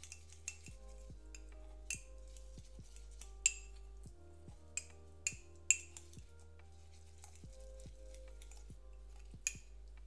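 A spoon stirring crumble mixture in a small ceramic mug, scraping and striking the rim in several sharp clinks, the loudest about three and a half seconds in and again between five and six seconds. Quiet background music plays under it.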